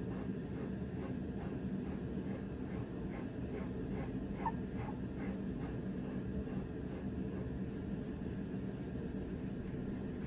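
Fingertips rubbing damp paper pulp off a packing-tape image transfer: faint quick rhythmic rubbing strokes, about three a second, through the first half. A steady low hum runs underneath and is the loudest part.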